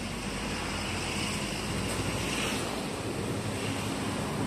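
Steady open-air noise beside calm sea water: light wind on the microphone mixed with the wash of water, with a faint steady low hum underneath.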